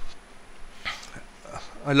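Quiet room tone with a faint, brief sound about a second in. A man's voice starts speaking near the end.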